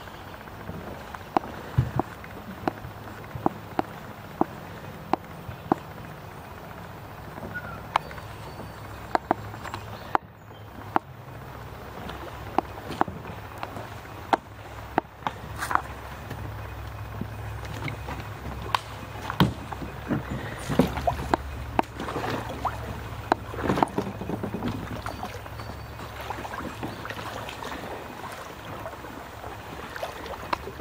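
Creek water lapping against a kayak hull while it sits near the bank, with sharp knocks on the hull about every half-second to second at first, then more scattered, over a steady low rumble of moving water.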